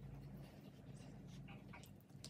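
Faint crinkles and small ticks of thin plastic as a plastic water bottle of bleach-water mix is squeezed over the bundled jeans, above a low steady hum.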